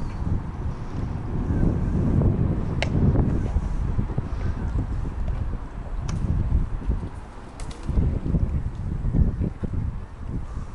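Wind buffeting the microphone: a gusty low rumble that rises and falls, with a few faint sharp clicks.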